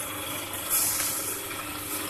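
Hydraulic paper-plate press machine running: a steady low motor-and-pump hum under a hiss that grows louder less than a second in.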